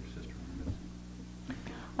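Quiet conference-room tone with a steady low hum and faint soft voices, a couple of small ticks in between.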